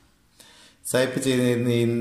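A man's voice speaking after a pause of nearly a second, drawing one syllable out into a long, steady sound.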